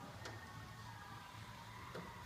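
Quiet room tone: a low steady hum with faint music, and one light click just after the start.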